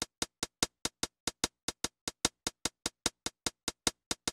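Sampled electronic drum-machine hi-hat from the Electro plug-in playing on its own: a steady run of short ticks about five a second, some louder than others. Its timing is set by the plug-in's feel lane, which pushes notes late to make them swing.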